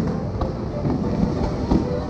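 Fireworks going off in several sharp bangs and low thuds over loud orchestral show music.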